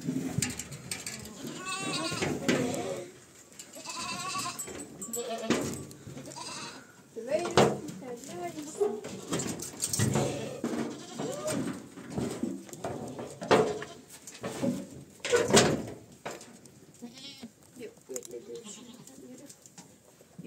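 A herd of goats bleating in a pen, many wavering calls overlapping, with sharp knocks among them; the calling thins out in the last few seconds.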